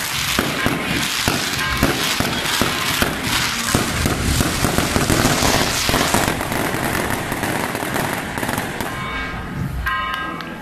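A dense, rapid barrage of firecrackers, cracking and popping without a break. Band music starts up near the end.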